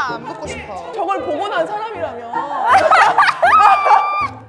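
Excited talking and exclaiming over background music with a low, steady beat. Near the end one voice holds a long, high-pitched cry.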